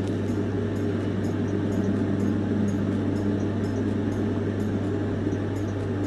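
A steady low buzzing hum with a noisy haze, unbroken and even in level, as a phone receives an incoming call.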